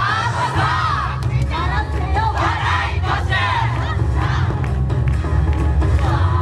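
Yosakoi dance team shouting calls together over loud amplified dance music with a heavy bass.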